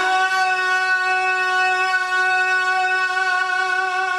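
A man's voice holding one long sung note into a microphone, steady in pitch with a slight waver.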